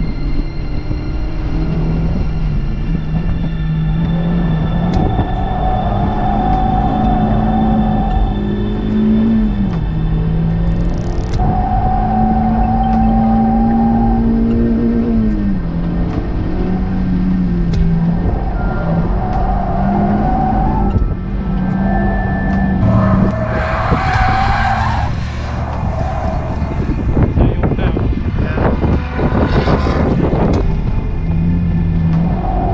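Mazda MX-5 NC's four-cylinder engine held at high revs, rising and falling, as the car is drifted, with the tyres squealing several times in sustained slides. Heard from the open cockpit with the roof down.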